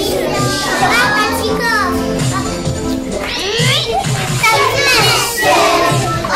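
Many young children's voices chattering and calling out at once, overlapping, with music playing underneath.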